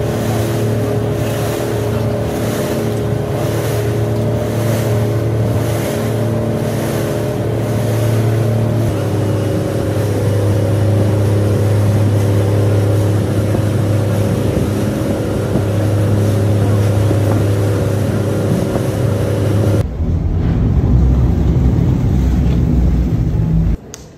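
Passenger boat's engine running with a steady hum, mixed with rushing water and wind on the microphone. About twenty seconds in it turns to a deeper rumble with wind buffeting, then cuts off suddenly near the end.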